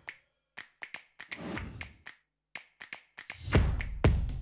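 Sparse, irregular short clicks and snap-like taps, part of a promo's sound design, with a loud beat and low drum coming in near the end.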